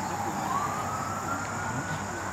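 A faint siren wailing, its single tone rising slowly in pitch and levelling off near the end.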